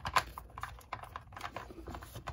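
Irregular light plastic clicks and knocks as a Batman action figure is pushed and fitted into the cockpit of a plastic toy Batmobile.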